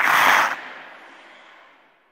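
Intro sound effect: a loud rush of noise that bursts in at the start and fades away over about a second and a half.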